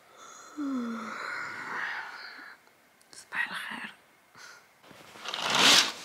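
A woman yawning on waking: a breathy yawn with a short falling voiced groan about half a second in, then more breathy sounds. Near the end a loud burst of noise swells and cuts off abruptly.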